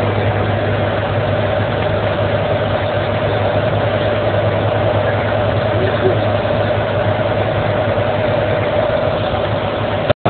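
Steady drone of a vehicle's engine and tyres on the highway, heard from inside the cab while driving, with a constant low hum.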